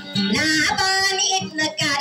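A dayunday song: a high-pitched voice sings a held, gliding melodic line over instrumental accompaniment.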